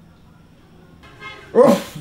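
Quiet room tone, then about a second and a half in a single short, loud vocal sound.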